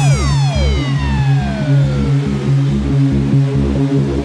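Euro-style electronic dance music from a DJ mix: a synth sweep falls in pitch and fades out over the first couple of seconds, above a steady kick drum at about two beats a second and a held bass note.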